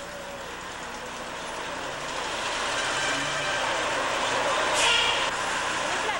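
Traffic on a busy city street: a steady mix of vehicle engines that slowly grows louder, with a short hiss about five seconds in.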